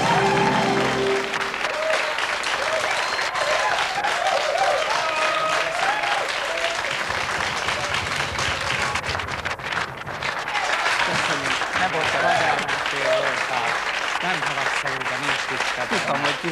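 Studio audience applauding steadily, with a short music sting that ends about a second and a half in, and voices talking over the clapping.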